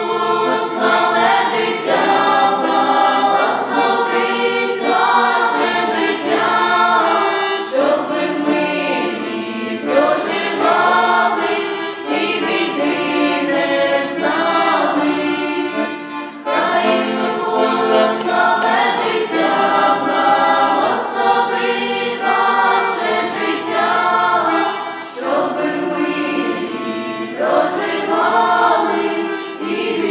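Choir singing a Ukrainian Christmas carol (koliadka) in several voices, with accordion accompaniment, phrase after phrase with short breaths between them.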